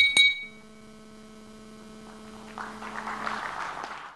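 A rapid high ringing, about five strikes a second, stops in the first half second. It leaves a steady low electrical hum from the sound system. About two and a half seconds in, a rough, crackly noise rises and then fades as the audio ends.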